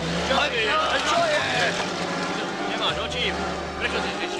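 Old off-road jeep's engine running and revving, its low drone dropping away in the middle and coming back about three seconds in.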